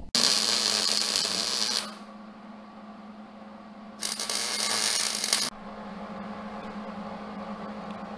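MIG welder laying two tack welds on a steel shock-mount tab, each a crackling hiss of about a second and a half that starts and stops sharply; the second begins about four seconds in.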